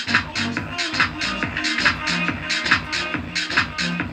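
Electronic dance music with a steady beat and huge bass, played through two bare, unenclosed 5-inch subwoofer drivers driven by a small DIY class AB amplifier board built on a CD6283 chip (15 + 15 W), as a bass test.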